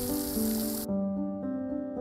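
Steady hiss of a fountain's falling spray over soft piano background music. The water sound cuts off abruptly a little under halfway through, leaving only the piano.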